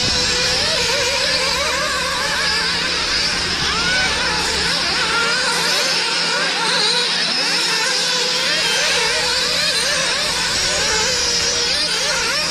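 Several nitro-powered radio-controlled model car engines running at once, their high-pitched whines overlapping and constantly rising and falling as the cars accelerate and brake.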